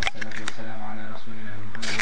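Intro sound design: a steady, held low drone with sharp clicks laid over it and a short hiss near the end.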